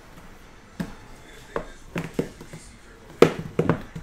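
Shrink-wrapped cardboard card boxes being handled and set down on a table: a series of light knocks and taps, with the loudest cluster of knocks near the end.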